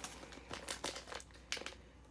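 Packaging being handled: soft, scattered crinkles and rustles of tissue paper and wrapping as wax melt sample packs are picked through.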